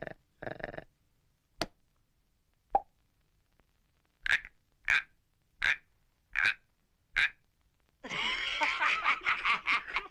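Frog croaking as a cartoon sound effect: five short, evenly spaced croaks about three-quarters of a second apart. Near the end a louder, busy jumble of sound takes over.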